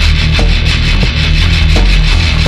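Instrumental passage of a heavy metal song: heavily distorted guitars and bass hold a low, steady riff under regularly spaced drum hits, with no vocals.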